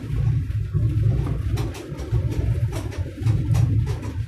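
Car cabin noise while driving slowly: a low, uneven rumble of engine and road, with occasional light knocks and rattles.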